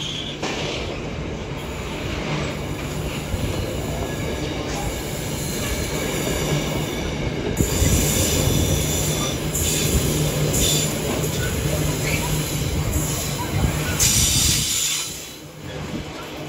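A loaded intermodal freight train's container wagons roll steadily past at speed. The wheels keep up a continuous rumble on the rails, with brief high-pitched tones at times; it gets louder about halfway through and dips briefly near the end.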